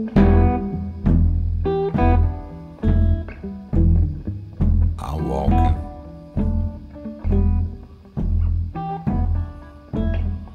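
Instrumental blues band passage: guitar over a steady pulse of bass notes, with drum hits.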